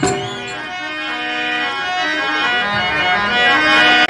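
Harmonium playing a melody of long held notes that step from one pitch to the next, without drums.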